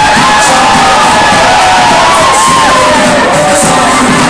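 Loud dance music playing over a hall's sound system, with an audience cheering and whooping over it.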